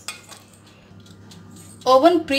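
A few sharp metal clicks and clinks in the first half second, then faint light clatter, from handling the metal parts of an open electric countertop oven. A woman starts speaking just before the end.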